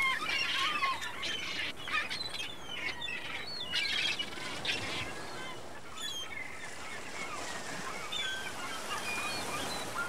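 Birds calling, many short, curling, overlapping calls, over a steady hiss like surf.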